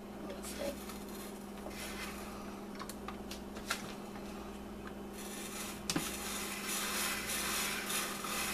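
Plastic spiral vegetable slicer at work on a peeled potato: a few scattered clicks and knocks as the sliding carriage is pushed and sticks. From about five seconds in comes a steady rasping scrape as the potato is cut against the thin-spiral blade.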